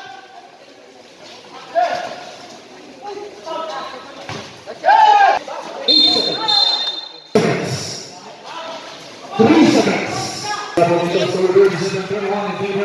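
Basketball game sounds: players shouting and a basketball bouncing on the court, with a referee's whistle blown in one long shrill blast about six seconds in.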